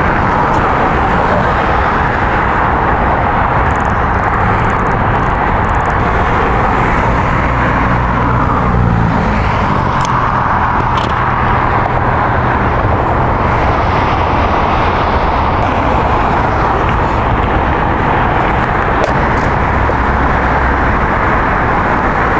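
Steady road-traffic noise: a continuous wash of tyre and engine sound with a low rumble, and a few faint clicks.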